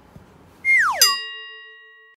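Comic sound effect: a quick downward-sliding tone, then a bright bell-like ding that rings on and fades away over about a second.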